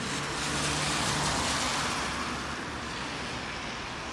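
A road vehicle passing on a wet road. Its tyre hiss swells over the first second or two and then fades, with a low engine hum under it in the first half.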